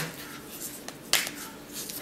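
Handling of tarot cards on a table: one sharp click a little past the middle as a card is snapped or set down, with a couple of fainter ticks.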